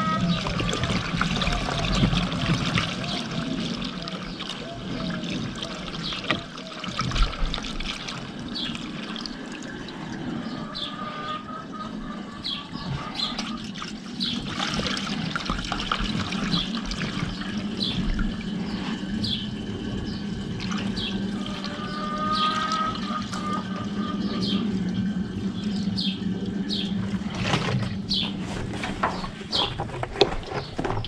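Diesel fuel pouring steadily from a large plastic jug through a funnel into a UTB tractor's fuel tank.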